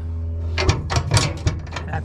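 Hinged aluminum diamond-plate storage box lid being handled by its latch: a few sharp clicks and knocks of metal on metal over a steady low hum.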